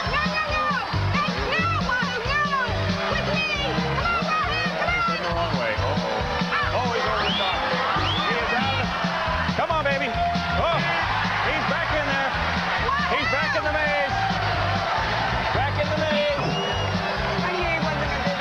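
Game-show background music with a steady beat, under a studio audience's many overlapping voices shouting and cheering.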